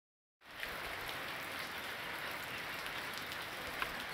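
Steady rain falling on leaves and ground, an even hiss with a few louder drop ticks, starting about half a second in.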